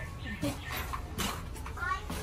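Indistinct voices of people chattering, with a short, high-pitched rising cry near the end.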